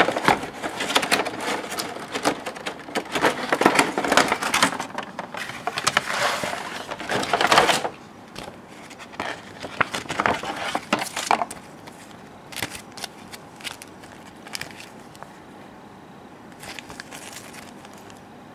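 Clear plastic packaging crinkling and crackling as it is handled: a dense stretch for about eight seconds, a shorter burst a couple of seconds later, then only occasional soft rustles.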